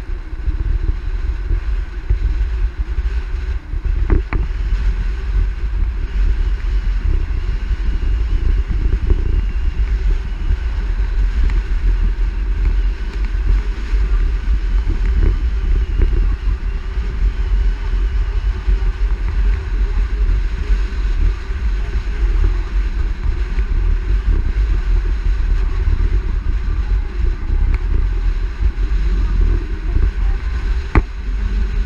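Steady road and wind noise of a car driving along a paved road, heard through a camera mounted on its hood, with heavy wind rumble on the microphone and a brief knock about four seconds in.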